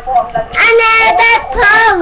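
Young children singing in high voices: a brief break near the start, then two long held notes.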